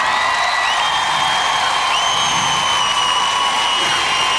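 Large arena crowd cheering and screaming, with several long, steady high whistles held over the noise.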